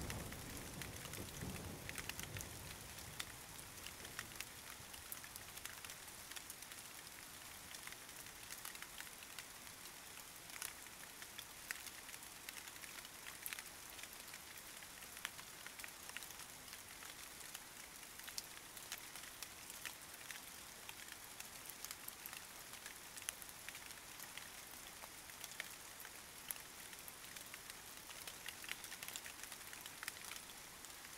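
Steady rain: a soft, even hiss dotted with many small raindrop patters. A low rumble of thunder dies away in the first couple of seconds.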